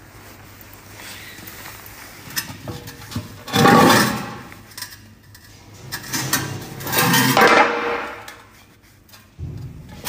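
A bent alloy wheel rim being handled on a concrete floor: a few light knocks, then two louder spells of metal clattering, about three and a half and seven seconds in.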